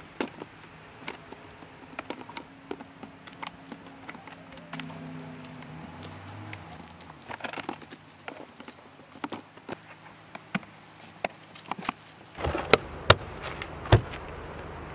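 Plastic battery-box lid and latches on a trailer tongue being pushed and worked shut: scattered sharp clicks and knocks, with the loudest snaps in the last second and a half as it finally closes.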